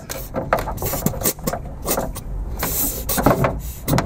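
Aerosol lithium-grease spray hissing in short bursts onto the bottom of a 3D printer's Z-axis lead screw, the longest hiss about two-thirds of the way through. Clicks and knocks of the can and hands against the printer run throughout.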